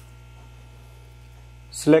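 Steady low electrical mains hum, and a man starts speaking near the end.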